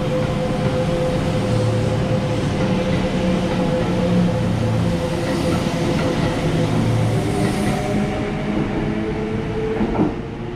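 Kintetsu 22000 series ACE limited express electric train running along the platform: a continuous rumble of wheels on rails with a steady electric whine from its motors.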